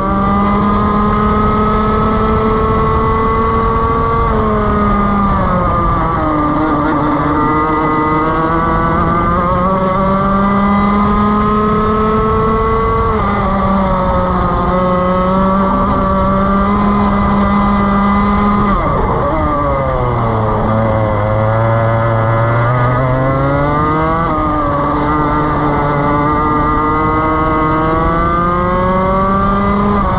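Rotax Max 125 two-stroke kart engine heard onboard at racing speed: the revs climb steadily on the straights and fall away sharply under braking several times, the deepest drop about two-thirds of the way through, before climbing again out of the corner.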